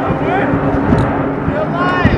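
Indistinct voices of people talking over a loud, steady background rush.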